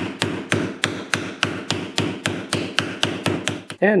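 Hammer tapping on a piece of wood laid over a cut ABS pipe, a steady run of even blows about three a second, driving a grease seal down into an ATV's front steering knuckle against the new wheel bearing.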